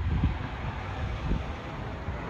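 Wind buffeting the microphone: a low, uneven rumble with no distinct events.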